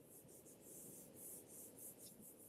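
Faint scratching of a stylus tip dragged back and forth across a tablet screen in quick short strokes, about four or five a second, while erasing handwritten ink.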